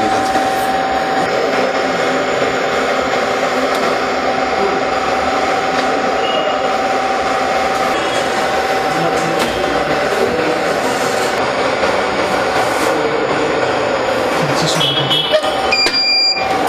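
BGA rework station running on a laptop motherboard: a steady rush of air from its heater blower and fans, with a steady whine through the first half and a few short high tones near the end.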